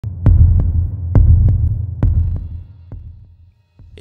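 Heartbeat sound effect: three deep double thumps, about one pair a second, over a low hum, then a fainter beat as it fades out near the end.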